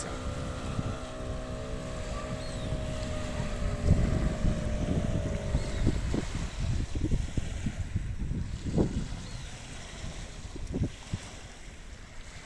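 A distant engine drones steadily and fades out about six seconds in, while gusty wind buffets the microphone and small waves lap on the sandy shore.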